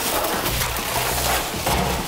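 Ice cubes poured from a bag into a galvanized steel tub of water: a continuous clatter and splash of falling ice.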